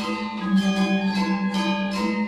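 Gamelan ensemble music: bronze metallophones and gongs struck in a quick, even run of bell-like notes over a steady held low tone.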